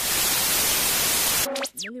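A loud burst of white-noise static lasting about a second and a half, cutting in and out abruptly. Right after it comes a brief tone with a quick rising sweep and a quick falling sweep.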